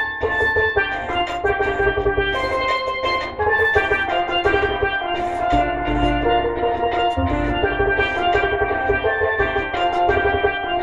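Tenor steel pan played with rubber-tipped sticks, rapid struck notes ringing out a reggae melody, over a steady bass and drum backing underneath.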